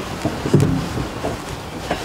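Car driving, a steady rumble of engine and road noise, with a short voice sound about half a second in.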